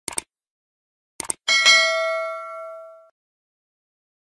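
A couple of short clicks, then a single bell-like ding about one and a half seconds in that rings on and fades away over about a second and a half.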